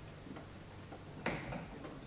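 Quiet hall room tone with a steady low hum and a few faint clicks, then a louder knock about a second and a quarter in as a handheld microphone is handled and raised.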